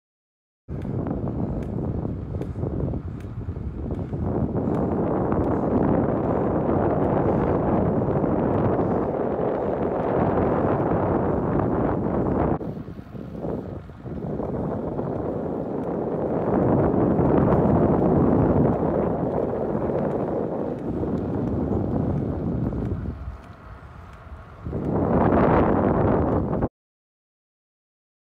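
Wind rushing over the microphone of a camera carried on a moving bicycle: a steady, rough noise that drops away briefly twice.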